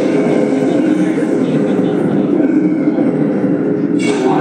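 Film soundtrack played over a room's speakers: a loud, steady rumbling mix with voices in it.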